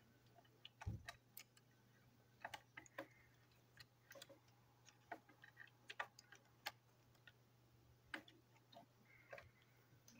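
Small, irregular clicks and taps of plastic toy-train parts being handled and fitted together by hand, with a duller knock about a second in.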